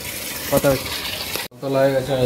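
Brief snatches of a man's voice over a steady hiss, which cuts off abruptly about one and a half seconds in; a man then starts talking.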